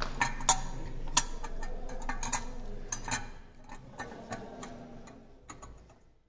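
Sharp metal clicks and taps as the internal parts of a diffusion pump are fitted by hand inside its metal body. The clicks are loudest in the first half and fade toward the end.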